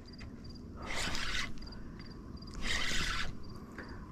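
Crickets chirping in a steady, quick pulsing trill, with two brief rasping hisses, about a second in and about three seconds in, that are louder than the crickets.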